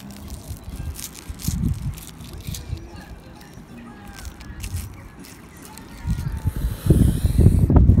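A small wooden fork clicking and scraping against battered fish and a moulded-pulp takeaway tray as the fish is cut. A louder low rumble rises near the end.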